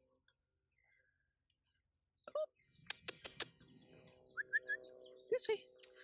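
Quiet at first, then a quick run of four or five sharp clicks about three seconds in, followed by a few short high chirps and faint brief voice sounds near the end.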